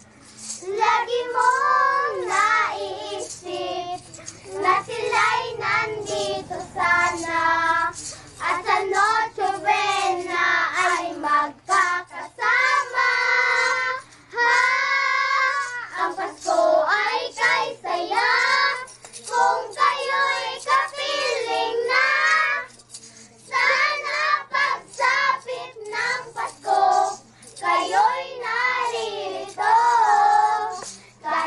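Children singing a Christmas carol together in phrases, with short breaths between lines.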